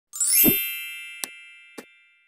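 Intro sound effect: a quick rising sweep into a bright, bell-like chime with a low thump under it, ringing out and slowly fading. Two short clicks follow about half a second apart, the kind of mouse-click effects that go with a subscribe-button and bell animation.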